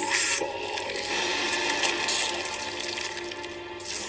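Sustained film score music mixed with bursts of rushing, hissing sound effects, the loudest near the start and another about two seconds in.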